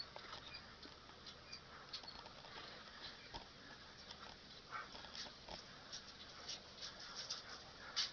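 Faint, scattered light ticks and rustles of a dog moving about in dry leaves, over a quiet outdoor background.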